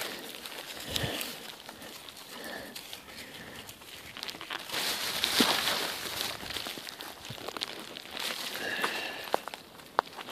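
Plastic shopping bag full of trash crinkling and rustling as it is handled, loudest about five seconds in, with scattered light footsteps and clicks.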